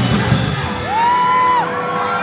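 A live rock band's song stops about half a second in. A long, high whoop from the crowd rises, holds and falls, over a steady ringing tone.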